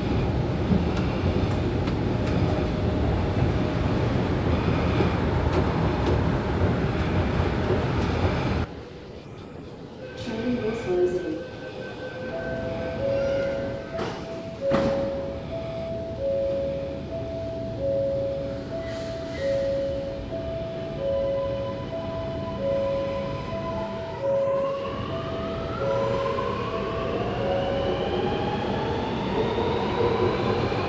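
Loud steady noise for the first few seconds, then, on a metro platform, a two-tone beep alternating between two pitches repeats for about fifteen seconds. Near the end a Sydney Metro Alstom Metropolis driverless train pulls away, its motor whine rising in pitch as it gathers speed.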